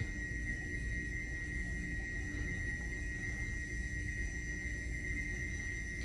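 Quiet steady background drone: a low hum with a thin, high, steady tone above it and no distinct events.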